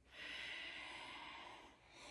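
A woman's breath, one long breath of about a second and a half that fades near the end.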